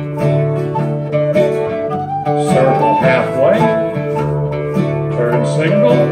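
Live acoustic trio playing an English country dance tune: plucked bouzouki and acoustic guitar in a steady rhythm, with a recorder carrying the melody.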